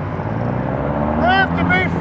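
Street traffic: a car's engine running, its note rising slowly as it accelerates, with a shouted voice about two-thirds of the way through.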